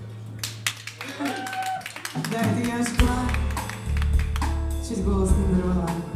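Live band of keyboards, electric guitar, bass and drum kit playing: a run of quick taps and short notes for the first couple of seconds, then the bass and drums come in about three seconds in and the groove fills out.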